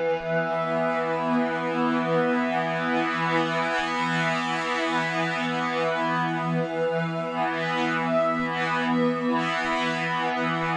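Harmor synthesizer pad from the AeroPad Patcher preset holding one sustained chord with a gently wavering movement. Its blur control is being worked, smearing the pad's harmonics.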